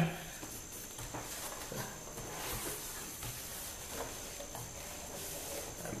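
Faint rustling and scraping of a cardboard box being opened by hand, with a few soft knocks, over a steady hiss.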